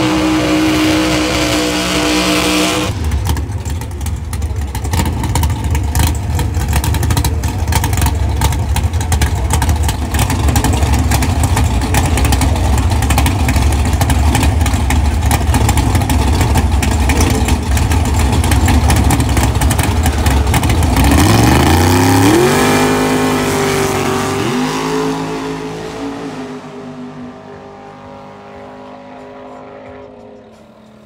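Drag race cars' big engines running loud and rough on the starting line, then launching: the pitch climbs steeply with a couple of breaks at the shifts from about 21 s in, and the sound fades as the cars pull away down the track.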